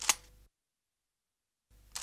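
Camera-shutter click sound effect, once just after the start and again near the end, with dead silence in between.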